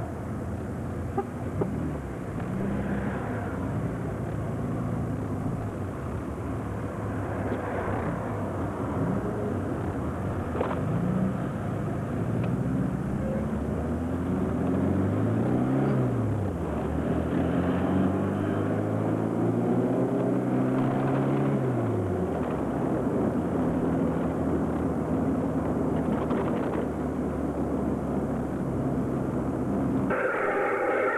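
Car engine heard from inside the car while driving in town, its pitch rising and falling several times as it accelerates, eases off and changes gear, over steady road noise.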